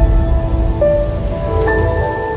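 Logo intro music: a few held synth tones that change pitch about a second in and again near the end, over a deep rumbling noise that slowly fades.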